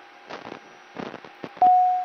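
Aircraft radio audio: low hiss with irregular crackles and clicks, then a loud steady beep tone near the end.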